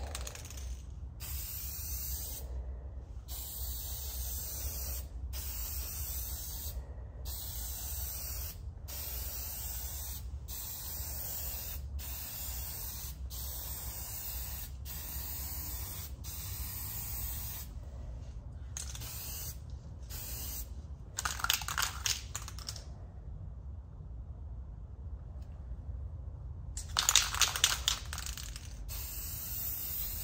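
Aerosol can of gold metallic spray paint hissing in a run of short spray passes, with brief breaks between them and one longer pause. Twice in the latter part comes a louder clattering burst, typical of the can being shaken so its mixing ball rattles.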